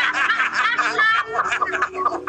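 Several people laughing hard together, men and a woman, heard over a live video call's compressed audio.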